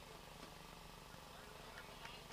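Near silence: faint outdoor background hum with a few very faint ticks.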